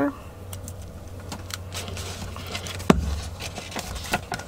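Hands working paper with a glue stick: soft paper rustling and rubbing with scattered small clicks, and one sharp click about three seconds in, over a steady low hum.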